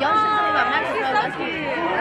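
Several spectators' voices chattering and calling out over one another, beginning with one drawn-out call.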